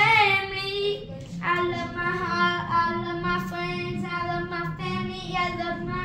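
A young boy singing a wordless tune in long held notes, the pitch bending a little, with short breaths between phrases.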